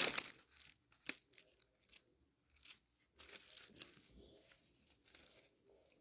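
Thin Bible pages rustling as they are leafed through, with one sharp tap about a second in and fainter page handling after.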